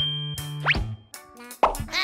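Children's background music with a steady bass line, overlaid with cartoon sound effects: a quick rising whistle-like glide about a third of the way in, and a sudden sound-effect hit near the end.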